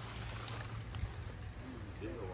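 Steady low outdoor rumble with a few faint light clicks and rustles, as branches of a tamarind tree are pulled.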